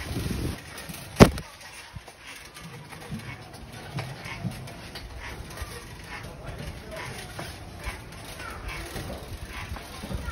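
A single sharp click about a second in, over low background noise with faint, scattered voices.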